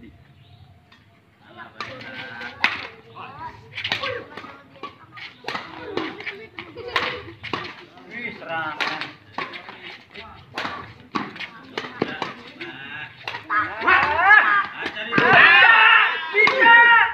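Badminton rally: a run of sharp clicks of rackets striking the shuttlecock, with people's voices around the court getting louder and more excited near the end.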